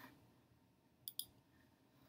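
Two quick computer mouse clicks in a row about a second in, with near silence around them.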